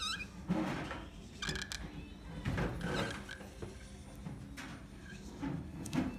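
Felt-tip marker drawing on paper: a few short scratchy strokes as a letter is written, with light handling knocks.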